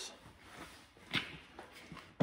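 Light handling of a wooden 2x8 board, with one short, light knock about a second in against low room noise.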